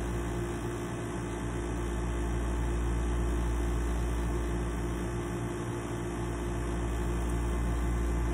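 A steady electrical-sounding hum made of several unchanging low tones, over a low rumble and a faint even hiss. It holds level with no strikes or changes.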